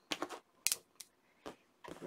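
A handful of short, light clicks and taps, about five at uneven intervals with quiet gaps between, as fabric is handled on an ironing board.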